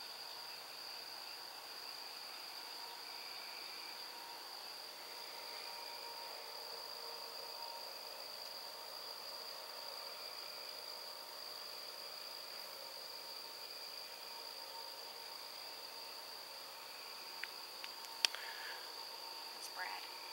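Crickets singing in a steady, unbroken high-pitched chorus, over a faint hum of distant traffic. A sharp click comes about two seconds before the end, with a couple of fainter clicks around it.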